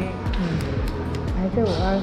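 Music plays with voices talking over it, and a few dull low thuds with light clicks.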